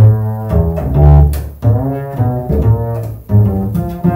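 Unaccompanied upright double bass played pizzicato: a jazz line of separate plucked notes, a few a second, each starting sharply and ringing on briefly.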